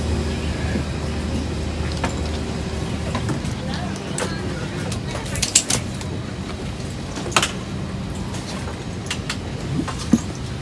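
Airliner cabin during boarding: a steady low hum with indistinct passenger chatter, and a few sharp clacks, the loudest two close together about five and a half seconds in and one near seven and a half seconds.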